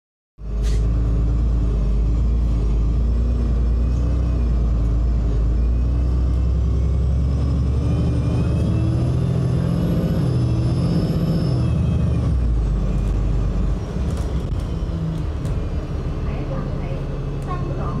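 Inside a moving diesel double-decker bus: the engine and drivetrain run loudly, with a high whine rising and falling through the middle. Near the end the low engine note drops away as the bus eases off.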